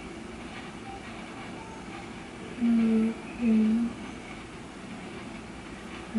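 A woman's voice making two short hums of steady pitch about three seconds in, over a steady low room hiss.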